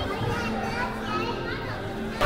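Many overlapping background voices, children's among them: chatter and playful calls from a crowd, with no single voice standing out.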